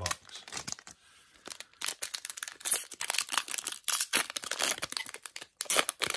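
Foil Pokémon trading-card booster pack wrapper being torn open and crinkled in the hands: a run of irregular crackles, sparse at first and thicker from about a second and a half in.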